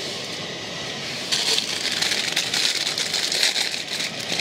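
Plastic packaging crinkling and crackling as it is handled and opened, starting suddenly about a third of the way in and going on unevenly.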